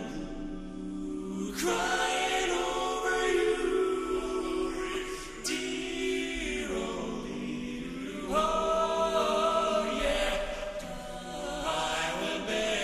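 Men's barbershop quartet singing a cappella in four-part close harmony, holding chords that shift together, with new phrases swelling in about a second and a half in and again past the eight-second mark.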